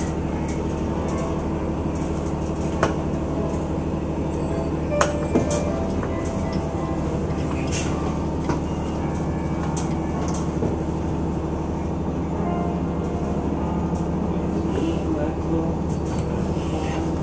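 Vehicle engine running steadily at low speed, heard from inside the vehicle, with a few light clicks around three and five seconds in.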